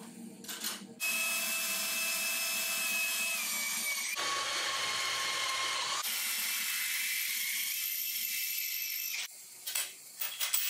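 Cordless drill boring through a flat steel bar, running steadily from about a second in and stopping shortly before the end, its pitch changing abruptly twice along the way. A few metallic clicks come before it starts and after it stops.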